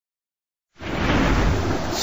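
Dead silence, then about three-quarters of a second in a rumble of thunder over steady rain noise starts abruptly.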